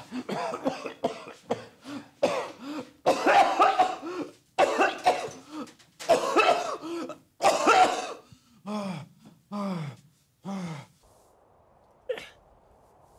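A man coughing hard in repeated fits, the chesty cough of a patient just diagnosed with a lung infection. Near the end come three short groans falling in pitch.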